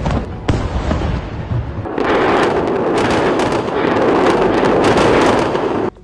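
A rapid string of cracks and pops over a low rumble, denser and louder from about two seconds in: explosions and rocket fire.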